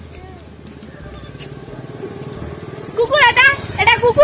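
An engine running with a steady low pulsing, slowly getting louder, with a child's high voice breaking in about three seconds in.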